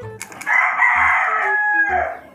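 A rooster crowing once, a single loud call of about a second and a half that starts about half a second in and falls away in pitch at the end.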